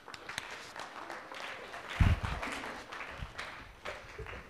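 Audience applauding in a lecture hall, with one heavy thump about halfway through.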